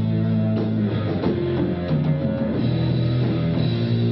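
Rock band playing live: guitar and bass holding sustained low notes that change pitch every second or so, over a drum kit.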